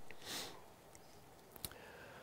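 A man sniffs once, close to the microphone, at the start; a single faint click follows about a second and a half in.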